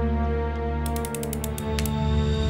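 Rapid metallic clicking of a snub-nosed revolver's hammer and cylinder ratcheting as it is readied to fire: a run of quick clicks starting just before the middle, lasting about a second, over a low sustained music drone.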